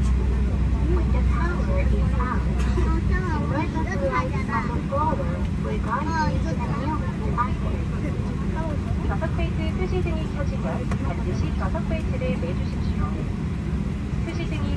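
Steady low drone of a parked airliner's cabin, with indistinct voices over it. The deepest part of the hum drops away about three seconds in.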